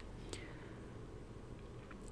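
Faint steady hiss of a voice recording with no words, with one brief soft click about a third of a second in.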